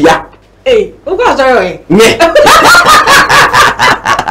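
Speech only: a conversation, with a brief pause near the start.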